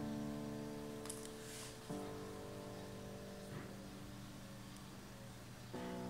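Quiet background music: sustained chords on a plucked-string instrument, changing about two seconds in and again near the end.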